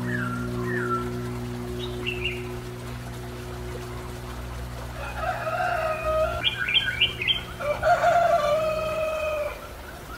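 Background music with a held chord that dies away about nine seconds in, and songbird chirps and calls over it: a few near the start, then a busier run of calls in the second half.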